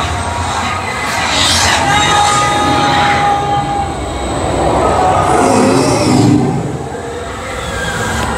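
Dark ride vehicle of a robotic-arm ride running along its track with a steady rumble, and a held whine for a couple of seconds about two seconds in.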